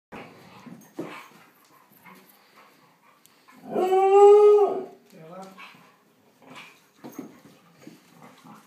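Dogs play-fighting, with scuffling and short grumbles, and about halfway one dog gives a long, steady howl, followed by a few short rising whines.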